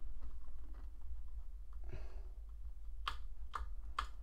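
Small screwdriver turning a tiny screw into a scale-model trim piece: faint scattered clicks, then two sharper clicks about three seconds in. A steady low hum runs underneath.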